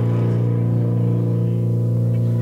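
Amplified electric guitar and bass holding one steady, droning low note, sustained without a break and with no drum hits.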